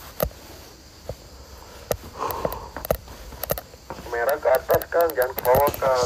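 Scattered light clicks and taps from someone walking, with a voice talking quietly and indistinctly in the second half.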